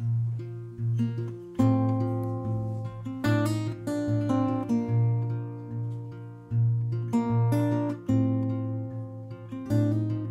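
Solo acoustic guitar fingerpicked as a song's instrumental introduction: a steady repeating low bass note with higher picked notes and chords above it.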